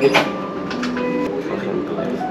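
Low voices talking back and forth, with a single short sharp click near the start.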